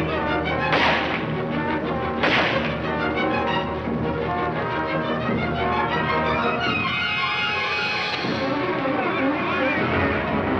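Orchestral film score with dense brass and strings, old mono soundtrack. Two sharp crashes cut through it, about a second in and again a second and a half later.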